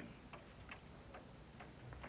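Near silence with faint, regular ticks, about two or three a second.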